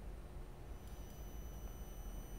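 Faint low background hum with no speech. A thin, high, steady whine comes in after about half a second.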